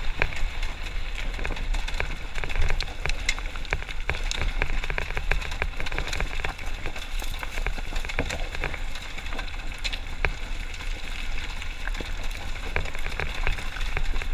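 Beta 300 RR two-stroke enduro dirt bike riding up a loose rocky trail: a steady low rumble under a dense, continuous clatter of sharp clicks from stones and the bike rattling over the rocks.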